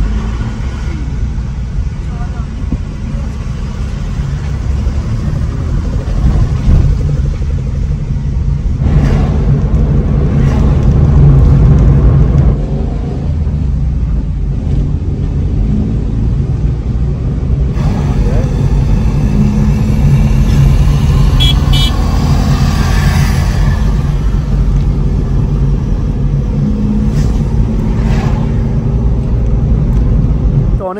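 Steady low road and engine rumble inside a moving car's cabin, growing louder over the first dozen seconds as the car picks up speed.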